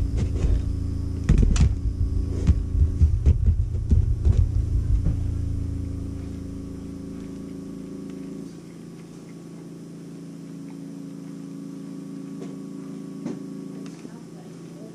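Handling noise through the tabletop: uneven low knocks and rumbling with a few clicks for about the first six seconds, then fading away, over a steady low electrical hum that runs throughout.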